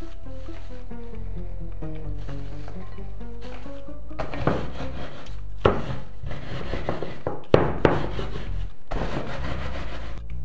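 Digestive biscuits in a plastic food bag being crushed with a wooden rolling pin on a wooden board: an irregular series of crunches and knocks starting about four seconds in. Background music plays throughout.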